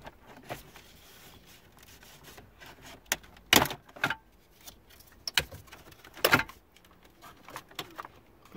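Plastic retaining clips of a 2016 Dodge Dart's dashboard bezel, the cover around the touch-screen monitor and instrument cluster, snapping loose as the bezel is pried off with a plastic trim tool: about six separate sharp clicks and pops, the loudest about three and a half and six seconds in.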